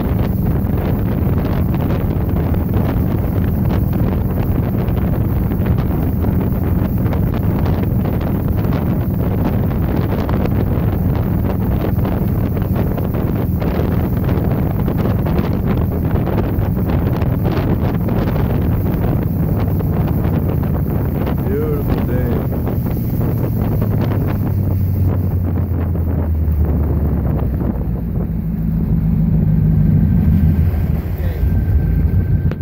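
Motorboat running fast across a lake: a steady rush of wind on the microphone and hull spray over the engine's low hum. In the last few seconds the engine note drops as the boat slows down.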